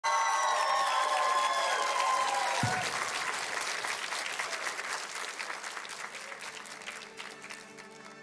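Studio audience applauding, the clapping slowly fading over the seconds. Over the first few seconds a short descending musical sting plays, ending in a low boom about two and a half seconds in.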